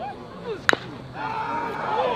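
A single sharp crack of a baseball bat hitting a pitched ball, about a second in, with spectators' voices calling out around it.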